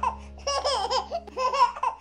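A baby giggling in short, high, bouncing bursts, two bouts of laughter about half a second each.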